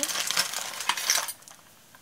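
Small metal craft trinkets, cogs and jewelry pieces, clinking and rattling against each other as they are handled. The dense jangling stops about one and a quarter seconds in.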